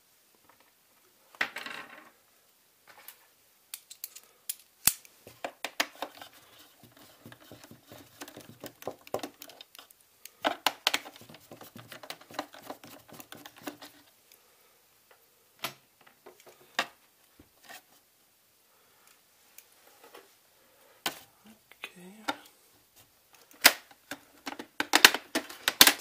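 Screwdriver work and plastic handling on a Xiaomi Mi robot vacuum being taken apart: scattered clicks and knocks, with two stretches of fine rattling as screws are turned out. Near the end comes a cluster of louder plastic clicks as the clipped-on top cover is pried loose.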